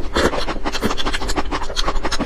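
Close-miked mouth sounds of chewing and squishing a soft jelly: a rapid, irregular run of wet clicks and squelches.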